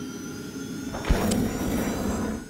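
Logo-animation sound effects: a steady rushing whoosh, with a sharp low hit about a second in after which the rush gets louder.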